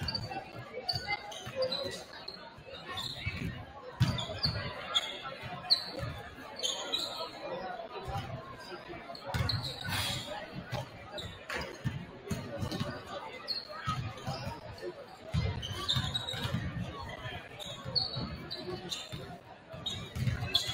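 Several basketballs bouncing on a hardwood gym floor during warm-up layups and dribbling: a steady run of irregular, overlapping thuds, echoing in a large gym.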